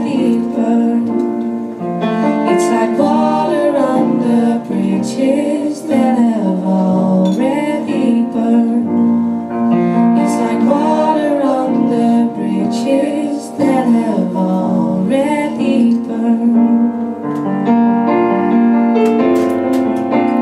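Live jazz quartet playing a slow ballad: piano chords over upright double bass and soft drums, with a female voice singing long, gliding notes above them.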